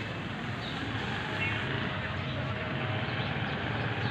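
Steady outdoor background noise with faint, indistinct distant voices and a low hum.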